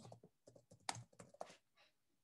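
Typing on a computer keyboard: a quick run of faint key clicks that stops about a second and a half in.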